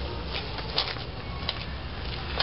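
Footsteps in sandals on a gravel driveway: a few light scuffs about half a second apart, over a low steady rumble.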